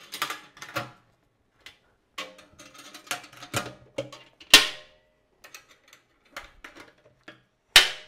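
Metal clamp latches on a stainless steel pot still being snapped shut around its lid: a run of clicks and small metallic clanks, some with a short ring. The loudest comes about four and a half seconds in, with another sharp one just before the end.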